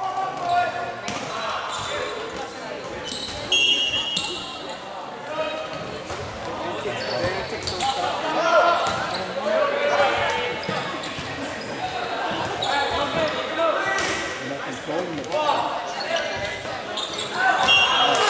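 Indoor volleyball rally in a large gymnasium: players and onlookers calling out and talking over each other, with the ball being struck several times, all echoing in the hall.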